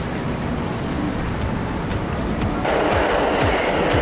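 Subway train running past a platform, a steady rush that grows louder in the last second or so. Background music with a deep, repeating kick drum comes in near the end.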